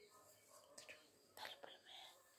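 Near silence, with a few faint brief sounds a little past halfway through.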